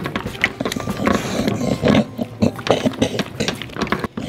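A dog eating noisily, chewing and smacking in quick, irregular bursts.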